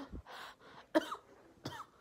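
A girl coughing a few times, short sharp coughs about a second in and near the end with breathing between.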